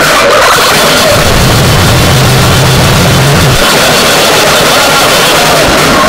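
Noisecore recording: an unbroken, very loud wall of distorted noise filling the whole range, with a deeper low note sitting underneath for about two seconds in the middle.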